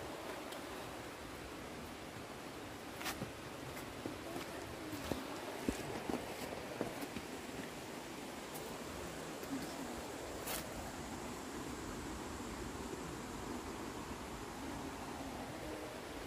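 Footsteps on a dirt and stony forest trail: a few scattered crunches and clicks, clustered in the first half, over a steady rushing hiss of outdoor background noise.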